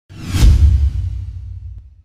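Intro sound effect for a logo reveal: a rising whoosh that hits about half a second in with a deep low boom, which then fades away over the next second and a half.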